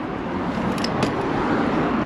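A road vehicle passing, a steady noise that slowly grows louder and then cuts off suddenly at the end.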